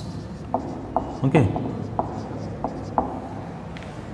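Marker pen writing on a whiteboard: a string of short, sharp strokes and taps of the tip as a word is written out, ending before the last second.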